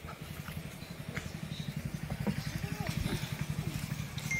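A motor engine running with a low, rapid pulsing, growing slowly louder, with faint voices over it.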